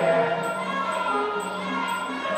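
Sarama, the traditional Muay Thai fight music: a reedy melody over a steady low drone, with small cymbals ticking about twice a second.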